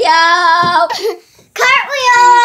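A boy singing in long, drawn-out notes, two sung phrases with a short break between them about a second and a half in.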